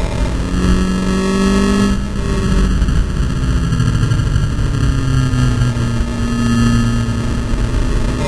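Volkswagen Scirocco Cup race car's turbocharged four-cylinder engine running at speed, heard from inside the cabin under loud, rough wind and road noise, poorly captured by the onboard microphone. The engine note drifts slowly up and down in pitch.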